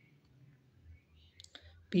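A pause in speech holding faint room noise and a couple of small clicks about one and a half seconds in, with a man's voice starting again right at the end.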